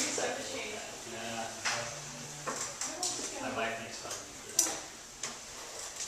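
A person talking in a roomy hall, with a sharp knock about four and a half seconds in and a few fainter clicks.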